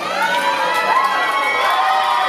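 Audience cheering, with several overlapping high-pitched whoops and screams gliding up and down in pitch.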